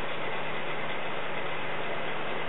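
Steady, even hiss with a faint low hum beneath it and no other sound: the background noise of a home webcam-style recording.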